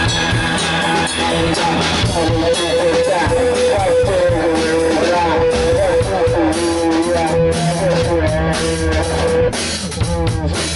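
Electric guitar and drum kit playing rock together live. Long held notes bend in pitch over the drums, and the held notes stop shortly before the end.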